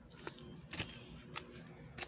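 Foil Pokémon booster-pack wrappers crinkling quietly as they are handled, a few scattered soft crackles and clicks.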